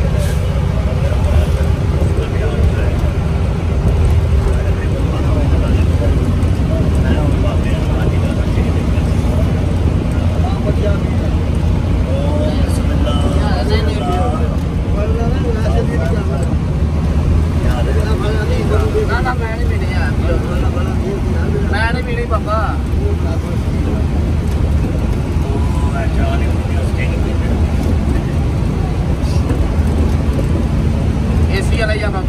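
Intercity bus engine and road noise heard from inside the cabin while driving at speed: a steady deep drone. Indistinct voices of people talking run underneath it, mostly in the middle of the stretch.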